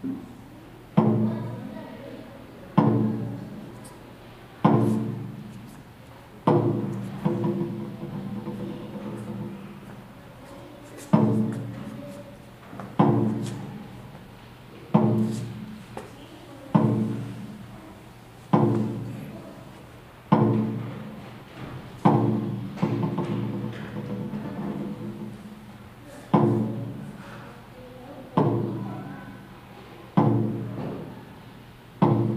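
Taiko drum struck slowly and steadily, one ringing beat about every two seconds that fades before the next, with two pauses of a few seconds between beats.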